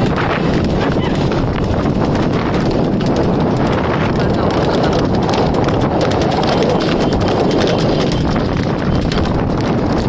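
Hooves of a horse and a bullock galloping together, pulling a racing cart: a fast, unbroken clatter of hoofbeats on a dirt road.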